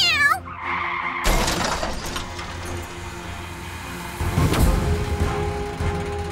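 A short, falling cartoon kitten meow at the start, then background music with sound effects. A sudden rush of noise comes about a second in, and heavy low thumps start a few seconds later.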